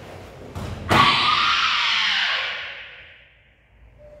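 A couple of bare-foot thuds on the foam mats, then a loud kiai shout about a second in that is held for over a second before fading away.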